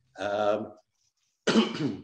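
A man coughing and clearing his throat in two short bursts, the second sharper and sudden.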